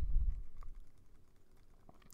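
A few faint computer keyboard keystrokes, separate clicks, after a low thump in the first half-second.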